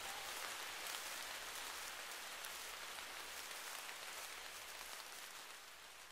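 Steady rain-like patter fading out slowly as the music track ends.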